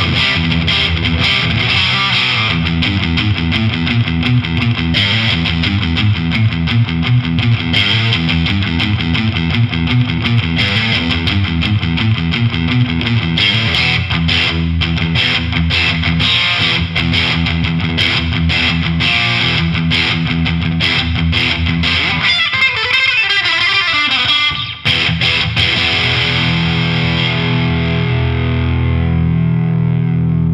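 Fender Stratocaster on its single-coil pickups played through an MXR Classic Distortion pedal at heavy gain into a Marshall tube amp: loud, heavily distorted rock riffing. Near the end it settles into a held chord that rings on.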